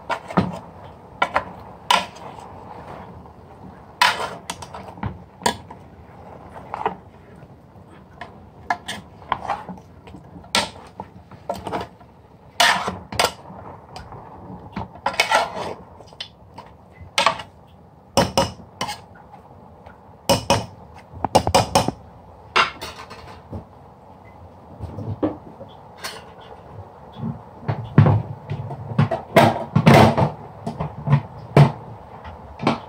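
Long metal spoon clinking and scraping irregularly against the sides of a metal pressure cooker pot while raw mutton, onions, tomatoes and spices are stirred together, with a few heavier knocks near the end.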